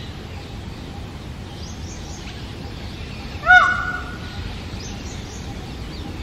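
Indian peacock giving one loud call about halfway through: a quick rise and fall, then a briefly held note.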